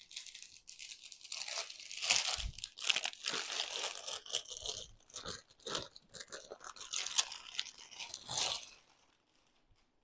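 Clear plastic saree packaging crinkling and crackling as a wrapped saree is pulled from a stack of packets and handled. The crackle is irregular and stops about nine seconds in.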